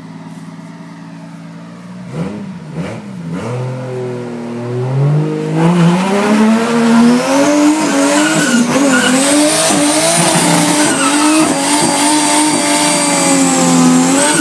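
Toyota Supra Mk4's straight-six idling, blipped twice about two seconds in, then revved up from about five seconds and held at high revs, its note wavering, while the rear tyres spin and squeal in a burnout.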